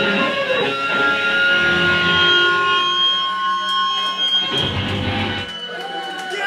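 Amplified electric guitar noise: several held, ringing tones over a rough low drone that thins out toward the end, with a brief low rumble shortly before it stops.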